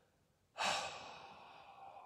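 A man's single long audible breath, a sigh close to the microphone, starting about half a second in and fading away over a second and a half.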